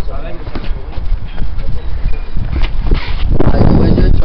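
Boxing sparring on concrete: sneakers scuffing and tapping in quick footwork, with scattered knocks from glove strikes, and a louder rush of noise near the end.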